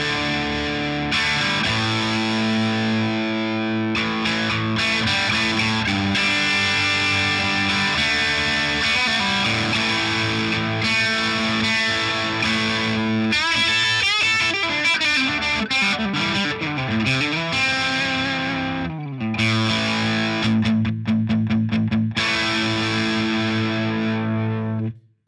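Stratocaster electric guitar with single-coil pickups played through distortion: held chords, a phrase with bending notes about halfway through, then short choppy chords near the end. A single-coil distortion tone that keeps more of the guitar's natural, woody character, with less output than humbuckers.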